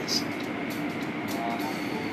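Automatic car-wash machinery and water spray heard from inside the car: a steady rushing noise over a low hum, with brief swishes as the hanging cloth strips sweep across the windshield.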